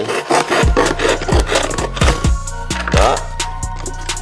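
Background hip-hop music with a steady beat, drum hits about every two-thirds of a second, over the scraping and rustling of a cardboard box being handled and pulled apart.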